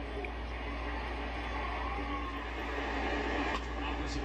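Baseball telecast playing quietly through a TV's speakers: faint ballpark crowd noise over a steady low hum, with no commentary.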